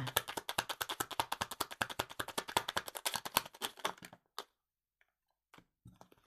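A tarot deck being shuffled by hand: a fast run of card clicks for about four seconds, then a few single taps as cards are drawn and laid down.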